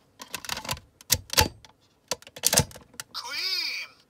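A Kamen Rider W transformation-belt toy being operated with a T2 memory: a run of plastic clicks and short electronic sound bursts, loudest a little after one second and again around two and a half seconds in. Near the end comes an electronic sound effect whose pitch rises and falls.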